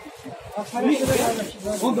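Clothing rubbing against a phone's microphone: a hissing rustle starting about a second in, over men's voices talking.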